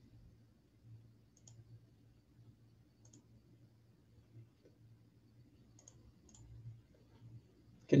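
A few faint, widely spaced computer mouse clicks over a low steady hum, as a screen share and a slideshow are started.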